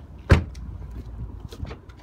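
The rear passenger door of a 2012 Volkswagen Tiguan slammed shut once, a single solid thud, followed by faint small clicks.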